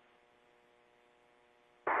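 Near silence with a faint steady hum of a few pure tones on the audio line, then a man's voice over the radio begins near the end.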